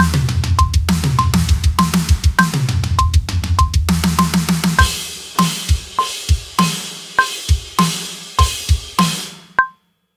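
Acoustic drum kit played at 100 bpm to a metronome click: a fraction fill of four-note hand groups around the snare and toms, answered by kick pairs, then a groove of kick, snare and cymbals. The drumming stops near the end, leaving the click ticking alone, with a higher click on the first beat of each bar.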